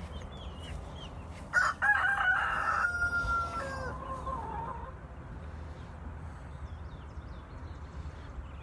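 A rooster crowing once, starting about one and a half seconds in: a loud call of about three seconds that holds a high note, then drops lower and trails off. Faint high chirps sound throughout.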